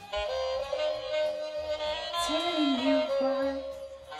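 Battery-powered musical plush bear playing its recorded saxophone tune: a continuous melody of held notes, just switched on with fresh batteries.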